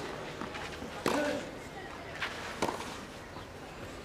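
Tennis ball struck by rackets on a clay court: a serve, then a rally, heard as sharp single hits roughly a second apart.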